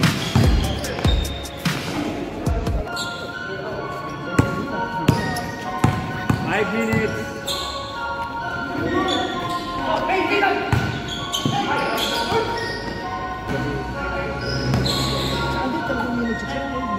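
A basketball bouncing on a hard gym court in a run of irregular thumps as it is dribbled and played, with players' voices.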